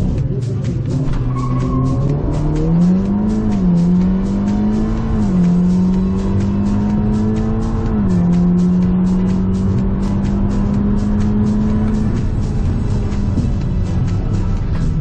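Audi S3's turbocharged four-cylinder engine at full throttle through the gears on a drag-strip run, heard inside the cabin. The pitch climbs and drops at each of three upshifts, about 3, 5 and 8 seconds in, then holds high and steady before the driver lifts off about two seconds from the end. Music with a steady beat plays over it.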